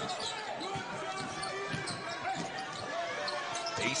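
A basketball being dribbled on a hardwood court, with arena crowd noise and voices around it.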